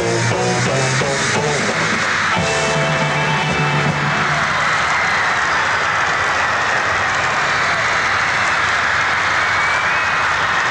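Beat group with electric guitars, bass and drums playing the final bars of a song, the band stopping about four seconds in. After that, a large audience of fans screaming and cheering without a break.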